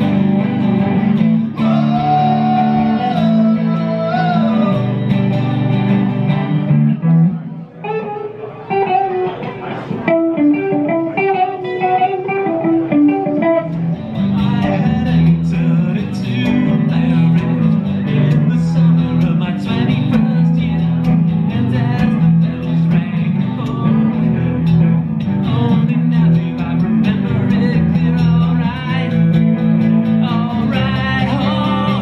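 Live acoustic and electric guitar duo playing a song together. About eight seconds in, the low strumming drops away and a single melodic line carries on alone for a few seconds. The full strumming returns about fourteen seconds in.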